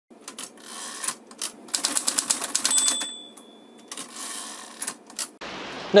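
Typewriter sound effect: a run of sharp key clacks, rapid in the middle, with a bell ding a little under three seconds in that rings for about a second, followed by a few more clacks.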